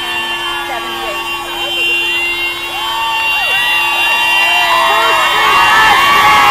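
A car horn held down in one long steady blast that cuts off near the end, over a crowd of marchers shouting and cheering. The crowd grows louder as the horn stops.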